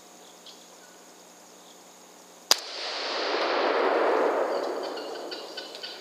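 A single 5.56 rifle shot about two and a half seconds in, recorded through the digital rifle scope's microphone, followed by a broad rush of noise that swells and then fades over about three seconds.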